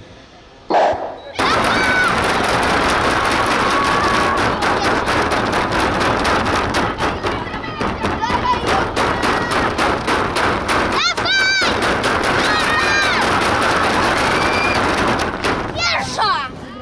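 Spectators cheering, shouting and clapping rapidly and loudly for an inline speed skater sprinting on the track. It starts suddenly about a second in, just after the start, and loud shouts stand out near the end.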